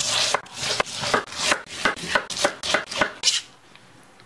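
A large kitchen knife chopping through a peeled pineapple and striking a wooden cutting board, about three cuts a second, stopping about three and a half seconds in.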